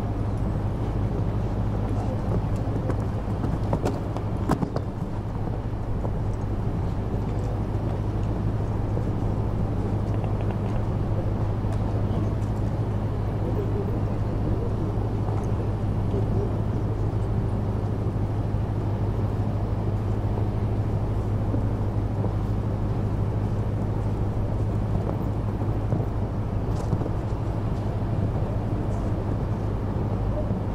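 A steady low hum under constant background noise, with a few brief clicks about four seconds in.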